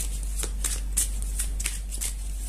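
A deck of tarot cards being shuffled by hand: a rapid, uneven run of short card snaps, several a second.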